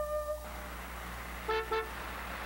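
A held flute note of background music ends within the first half second, giving way to the hum of city street traffic. A car horn sounds two short toots about one and a half seconds in.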